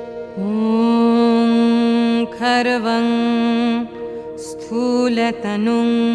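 Devotional Hindu music to Ganesh: a singer holding long, ornamented notes over a steady instrumental drone, the lead-in to a sung Sanskrit shloka.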